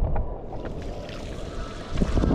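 Strong wind buffeting the action camera's microphone over the rush of choppy water beneath a foiling board, easing in the middle and surging louder again near the end.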